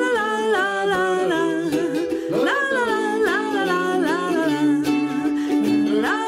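Youth concert band of flutes, cornets and euphonium playing live, a melody of held notes joined by rising slides.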